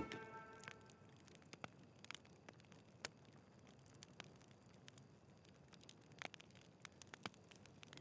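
A plucked guitar chord from the score fades out in the first second, followed by near silence with a few faint, scattered clicks.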